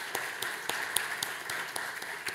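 Audience applauding, many separate claps.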